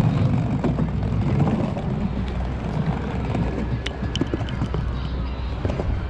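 Small plastic skateboard wheels of a penny board rolling over wooden boardwalk planks: a steady low rumble broken by irregular clicks as the wheels cross the plank joints.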